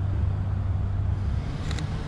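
Steady low rumble of road traffic in an outdoor street setting.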